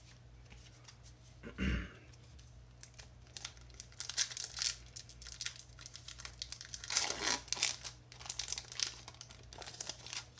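A Magic: The Gathering booster pack's foil wrapper being torn open and crinkled by hand, in a run of crackly bursts from about three seconds in. A throat clear comes shortly before.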